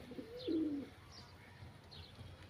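Domestic pigeon cooing once, a short low wavering call about half a second in, with faint high bird chirps now and then.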